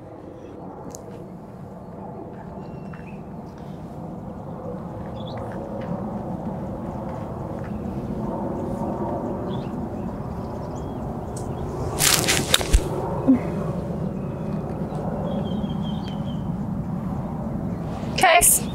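A 54-degree wedge strikes a golf ball once, about twelve seconds in, with a sharp click, over a steady low background noise that slowly grows louder.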